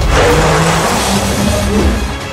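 A loud rushing sound effect over background music. It starts suddenly and thins out over about two seconds, with steady low music notes underneath.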